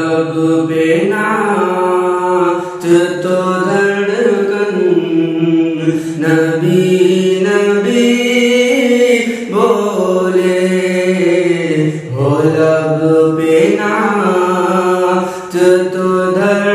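A man's voice singing a naat, Urdu devotional poetry in praise of the Prophet, in drawn-out melodic phrases of a few seconds each with short breaks between them.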